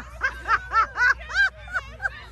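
A person laughing in a quick run of short, high-pitched 'ha's, about six in a second and a half.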